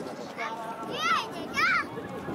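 A child's voice calling out twice, high-pitched and falling in pitch, over the murmur of a crowd.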